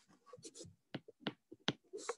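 Stylus tapping and scratching on a tablet's glass screen during handwriting: a string of short, sharp taps, about four loud ones with fainter ticks between.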